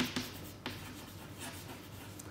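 Chalk writing on a blackboard: a few sharp taps and scratches of the chalk in the first second, then fainter scraping strokes.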